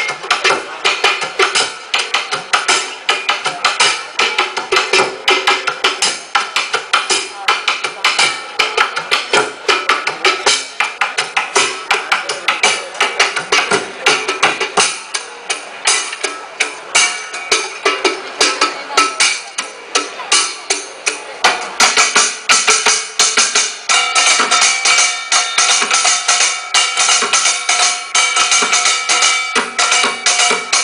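Music with a fast, busy percussion rhythm of rapid strikes. From about three-quarters of the way in, sustained pitched notes join the percussion.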